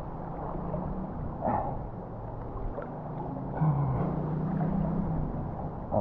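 River water sloshing and splashing around a person's legs as they wade upstream against the current, with a sigh at the start. About halfway through a low hum lasts over a second.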